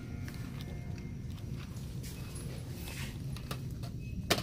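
Scattered small clicks and rustles from a cardboard product box being handled, over a steady low hum of store ambience.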